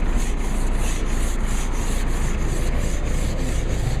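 Plastic ice scraper scraping frost off a car windshield in quick, rhythmic strokes, several a second.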